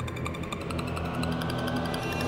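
Game-show score-countdown sound effect: rapid, evenly spaced electronic ticking over a low musical drone, with a tone slowly rising in pitch, as the score column counts down.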